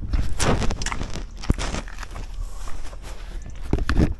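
Loose gravel crunching irregularly as a person moves about on it, with a few sharp knocks.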